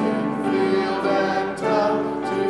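Congregation singing a hymn together, voices holding and moving through the notes of a verse.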